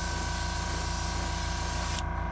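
Small airbrush air compressor running with a steady hum and a few steady whining tones. Over it, the hiss of a gravity-feed airbrush spraying, which stops at the very end.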